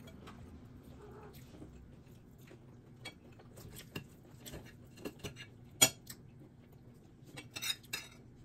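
A fork clinking and scraping on a plate during a meal of fried chicken, in scattered light clicks. One sharp clink stands out about three-quarters of the way through, and a quick run of small clinks comes near the end, over a faint steady low hum.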